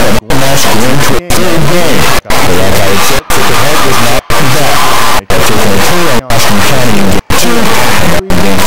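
Overloaded, distorted voices or music, cut by a brief dropout about once a second.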